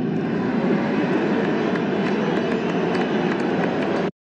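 Large stadium crowd making a loud, sustained mix of boos, whistles and cheers in response to a speech remark.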